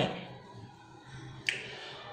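A single short, sharp click about one and a half seconds in, over a quiet background.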